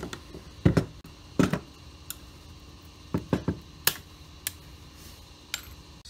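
Retaining clips on a Chevelle A/C-heater control panel being popped off by hand: a series of short, sharp clicks and snaps, roughly a second apart, with a quick run of three or four clicks about three seconds in.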